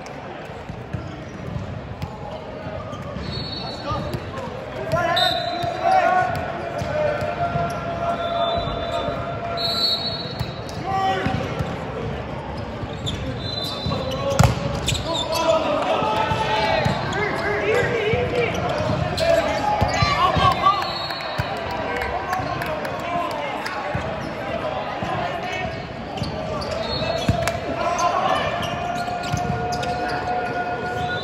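Volleyball being served and hit during a rally, sharp ball impacts in a large echoing gym, with the loudest hit about halfway through. Players call out and shout over the play.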